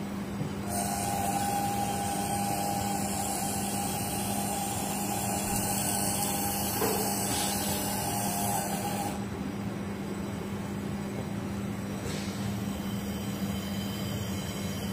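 Robotic fiber laser welding a stainless steel workpiece turning in a rotary fixture. A steady hiss with a faint whine comes on about a second in and cuts off suddenly about nine seconds in, over a constant low machine hum.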